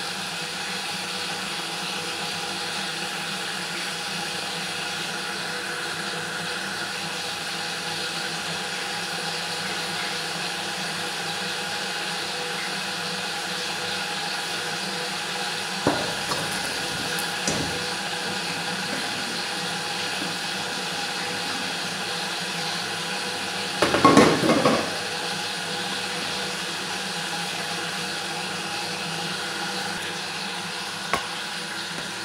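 A metal pot knocking against a stainless steel colander and sink as cooked rice is tipped out to drain: a couple of sharp knocks about halfway through and a louder burst of clattering about three-quarters of the way in, over a steady hiss.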